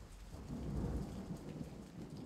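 Steady rain falling, with a low rumble of thunder that swells about half a second in and then eases.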